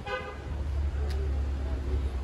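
A car horn gives one short toot at the very start, followed by a steady low rumble.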